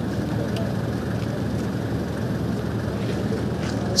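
A steady low rumble of background noise, even throughout, with no sudden sounds.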